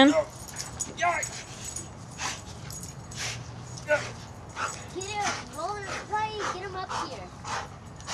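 A dog whimpering with short yips: a few scattered calls, then a quick run of about five about five seconds in.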